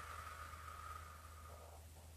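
A faint, slow breath lasting nearly two seconds and fading out, over a low steady room hum.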